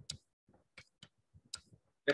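Near silence broken by four or five faint, short clicks at uneven intervals.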